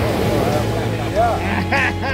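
Voices of several people on a beach, with a steady low hum underneath.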